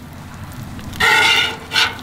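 A metal spatula scraping on the steel griddle top as it slides under a flatbread. About a second in it gives a short, steady, high-pitched squeal, and a brief scrape follows near the end.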